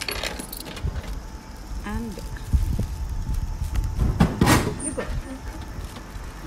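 Coins clinking as they are fed into a Japanese drink vending machine's coin slot, then a louder clatter about four seconds in as the bought drink drops into the dispenser tray.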